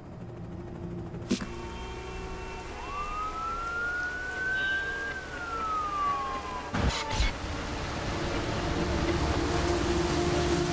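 An emergency-vehicle siren wails once, rising in pitch and then falling, over a steady traffic rumble that builds toward the end. Two sharp knocks come about seven seconds in.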